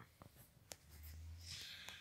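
Faint handling noise on the recording device: a few light clicks, then a low rubbing rumble with a hiss from about a second in.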